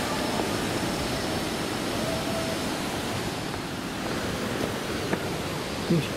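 River water rushing steadily through a rocky gorge, a continuous, even wash of noise.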